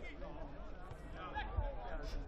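Pitch-side ambience at a football match: faint, distant shouts of players on the field over a steady low wind rumble.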